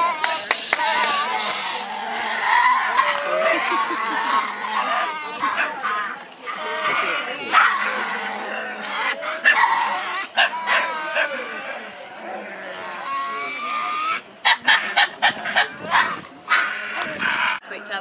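Tasmanian devils growling and screeching in wavering, rising and falling calls as they squabble, a sign of agitation that may be over territory or over someone coming close to their den. A quick run of sharp clicks comes near the end.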